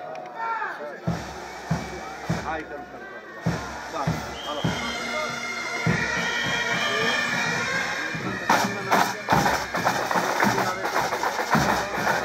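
Band music with drum beats about every half second and a high, held wind melody, over a crowd's voices. A few sharp cracks come about two-thirds of the way through.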